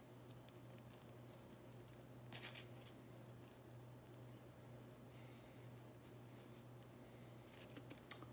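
Near silence: the faint rustle and patter of dry breadcrumbs pinched and sprinkled by hand onto fish fillets, over a steady low hum. One brief, slightly louder scratch comes about two and a half seconds in.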